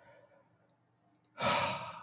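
A man's heavy, exasperated sigh: a faint breath in, then a loud breath out about one and a half seconds in that trails away.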